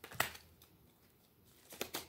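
A deck of tarot cards being shuffled by hand: a few short card clicks at the start and again near the end, with a quiet stretch between.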